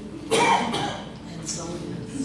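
A person coughing once, loudly and abruptly, amid faint talking.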